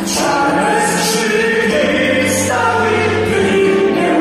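A live band performing a song: several voices sing together over keyboards and a drum kit, with cymbal splashes now and then.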